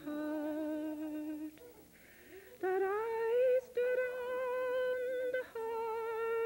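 A voice humming a slow tune in long held notes with a slight waver, breaking off about a second and a half in and coming back on a higher note.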